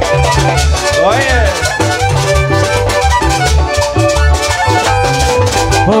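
Chanchona band playing a cumbia live: violins carry the melody over a steady bass and drum beat, in an instrumental passage between sung lines. A quick swooping glide up and down comes about a second in.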